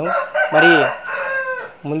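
A rooster crowing: one drawn-out crow lasting about a second and a half that tails off, with a man's voice briefly over it.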